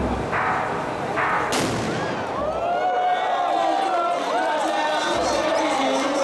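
A ceremonial firework cannon shot goes off with a single sharp bang about a second and a half in. It is one of the three starting shots that signal the goddess's palanquin setting off. Crowd din runs underneath, with wavering whistle-like tones after the bang.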